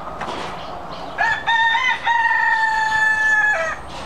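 A rooster crowing once, starting about a second in: a few short notes that rise, then one long held note that drops away at the end, about two and a half seconds in all.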